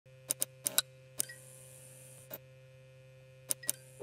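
A series of sharp clicks, about eight, several in quick pairs, over a faint steady hum.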